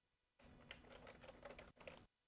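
Faint typing on a computer keyboard: a quick run of key clicks starting about half a second in.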